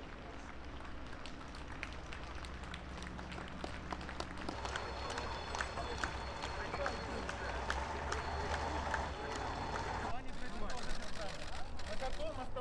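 Street crowd noise: indistinct voices and scattered clapping over a low rumble, growing gradually louder.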